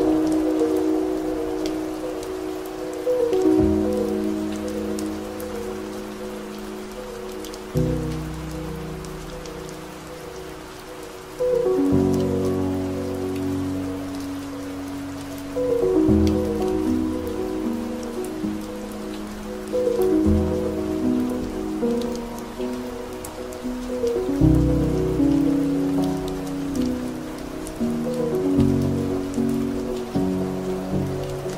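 Slow, soft piano music: a new low note or chord is struck about every four seconds and left to fade, under quieter notes higher up. A steady rain recording runs beneath it, with scattered raindrop taps.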